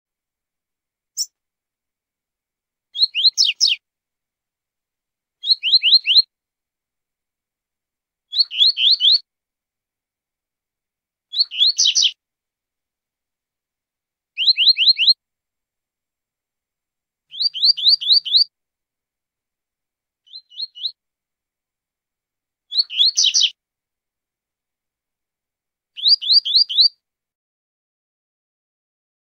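Double-collared seedeater (coleiro) singing the 'tui-tui zel-zel' song: short phrases of three to five quick, high, down-slurred notes, repeated about every two to three seconds with clean pauses between.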